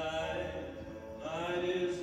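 Slow vocal music: a voice singing long, held notes in phrases of about a second.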